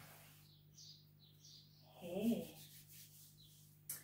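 A fingertip drawing lines through flour spread on a tray, giving soft, faint rubbing strokes. A short hummed voice sound comes about two seconds in.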